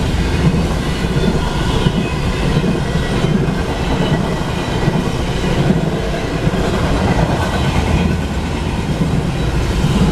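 Double-stack intermodal freight train rolling past: a steady, loud rumble and clatter of steel wheels on the rails as the container cars go by.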